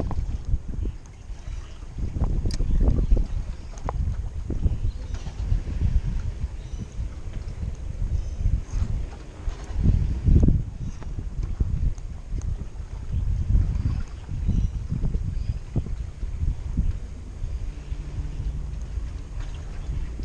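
Gusty wind buffeting the microphone over water lapping at the wharf, with a few light clicks.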